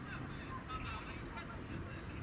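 Scattered short calls of distant birds, heard over a steady low rumble.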